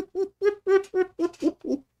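A high-pitched voice repeating short sing-song syllables in a quick even rhythm, about four a second, stopping shortly before the end.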